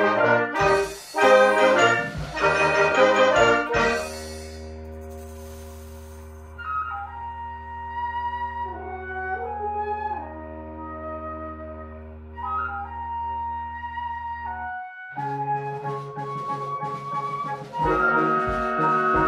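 Concert band of woodwinds and brass playing: loud brass-led chords at first, then a soft held low chord with a lone melody line over it, a brief break, and the full band coming back in near the end.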